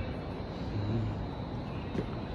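Steady low rumbling background noise, with a brief low hum just before the middle.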